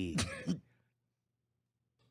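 A man's voice trails off about half a second in, then near silence with only a faint steady low hum.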